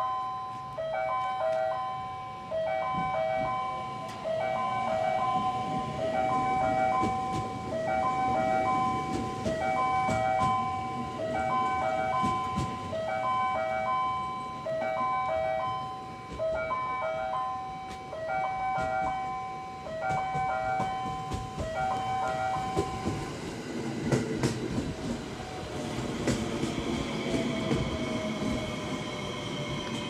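A short multi-note electronic chime repeats about every two seconds, a station warning that a train is approaching, and stops a little after 20 seconds in. Then a JR West 521-series electric train pulls into the platform, its wheels rumbling on the rails and its motors whining in gliding tones as it brakes.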